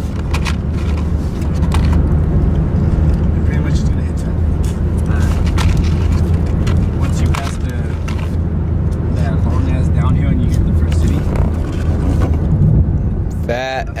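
Steady low drone of road and engine noise inside the cabin of a moving car.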